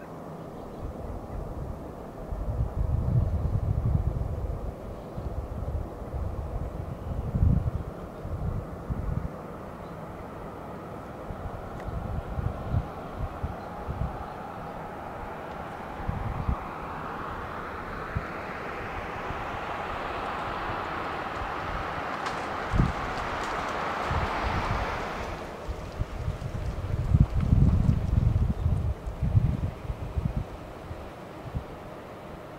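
Wind buffeting the microphone in gusts over the steady sound of a distant idling diesel freight locomotive. A hiss builds for several seconds past the middle and cuts off suddenly.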